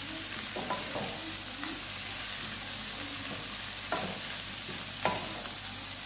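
Shredded vegetables and beef sizzling in a hot pan as they are stir-fried, stirred and turned with a wooden spatula. The spatula scrapes against the pan a few times, most clearly about four seconds in and again a second later.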